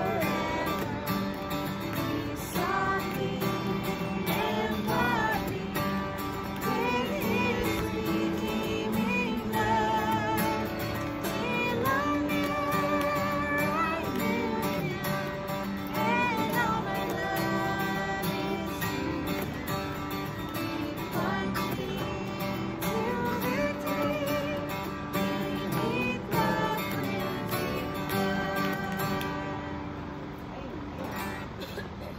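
Strummed acoustic guitar accompanying a small group singing a song together, the sung melody wavering above a steady bed of chords.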